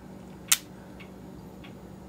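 A single sharp click from a disposable camera, followed by a faint high whine rising in pitch as its flash charges after being switched on. A clock ticks faintly in the background.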